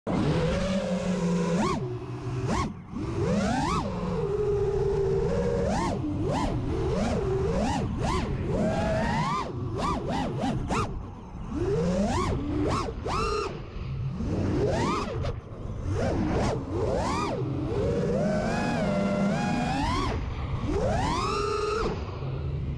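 Brushless motors of a 5-inch FPV freestyle quadcopter (Amax 2306 2500kv, three-blade 5-inch props) whining. The pitch rises and falls sharply over and over as the throttle is punched and chopped through flips and dives, with rushing air throughout.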